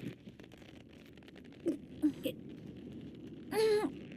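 Faint, quiet background with a few soft blips, then a brief murmur from a person's voice shortly before the end.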